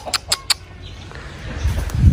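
Chicken clucking: a quick run of short clucks in the first half second. A low rumble follows near the end.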